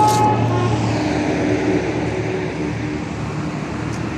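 Steady street traffic noise with a low motor-vehicle engine hum, strongest in the first second. A steady high tone carried over from before stops just after the start.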